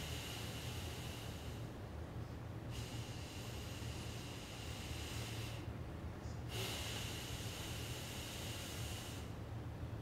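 Slow, soft breathing picked up close on a lapel microphone: long hissing breaths that come and go about every three to four seconds, over a steady low hum.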